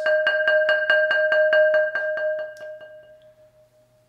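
A glazed ceramic flower pot rolled with a yarn mallet, about eight soft strokes a second, ringing one steady pitch: a swell that holds for about two seconds and then fades away.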